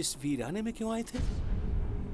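Brief speech in the first half, then a deep low rumble that sets in suddenly about halfway through and continues.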